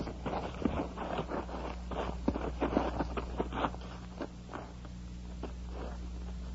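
Radio-drama sound effect of hurried footsteps and rustling, a quick run of short scuffs and crackles that thins out after about four seconds, over a steady low hum.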